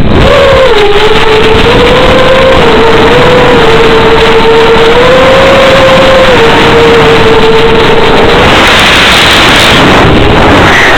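Electric motor and propeller of a fixed-wing FPV plane whining at a fairly steady pitch, stepping slightly up and down with throttle, under a loud, distorted rush of wind and hiss.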